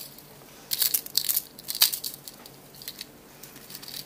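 Hands handling a carded bracelet and its packaging: a run of short, sharp rustles about a second in, the loudest near two seconds, then a few fainter ones.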